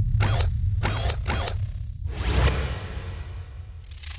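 Sci-fi sound-design effects over a low bass rumble: three quick mechanical whirs in the first second and a half, then a longer whoosh a little after two seconds as the sound fades down. A crackling glitch burst begins right at the end.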